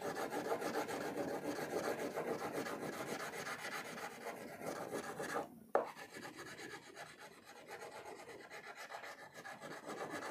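Wax crayon rubbing on paper in quick, even strokes as an area is coloured in. A short pause comes a little past halfway, and then the strokes go on slightly softer.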